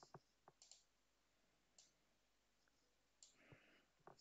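Faint, scattered clicks of a computer keyboard and mouse, about half a dozen in four seconds, against near silence.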